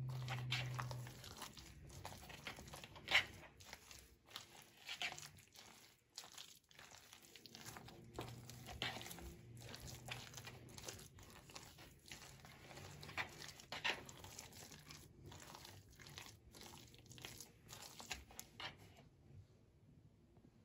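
Silicone spatula stirring chunky potato salad with mayonnaise in a plastic bowl: faint, irregular wet mixing and scraping sounds. A low steady hum sounds for about the first second.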